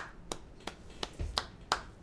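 One person clapping hands in a steady rhythm, about three sharp claps a second.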